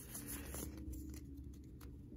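A stack of Pokémon trading cards flipped through by hand: faint sliding and flicking of card stock, with a few light clicks, over a low steady room hum.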